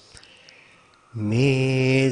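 A Buddhist monk chanting in Sinhala. After a quiet pause of about a second, he starts one long held syllable at a steady low pitch.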